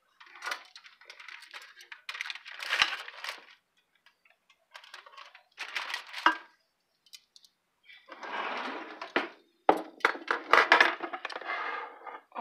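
Aluminium foil crinkling and rustling as it is handled around a roast chicken in a baking dish, in three bursts, with a few sharp clinks of the glass dish.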